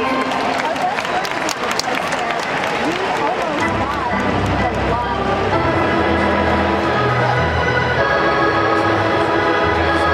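Ballpark crowd chatter and shouting. About four seconds in, stadium PA music with a low bass line comes in, and steady held chords join it over the crowd.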